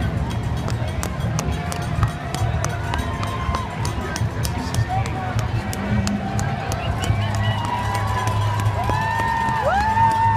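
Footfalls of a large pack of marathon runners slapping the pavement as they stream past, over the chatter of a roadside crowd. Near the end, spectators' voices rise in whoops and cheers.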